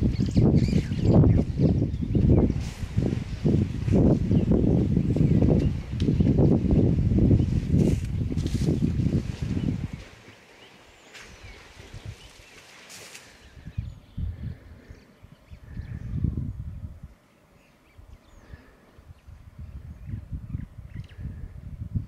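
Loud, irregular low rumbling noise that swells and fades for about the first ten seconds, then drops away to quiet outdoor ambience with faint high bird calls and a few brief low swells.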